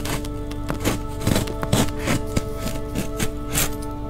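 Scissors cutting through packing tape and cardboard on a shipping box: a dozen or so short, sharp snips and scrapes at an uneven pace, over steady background music.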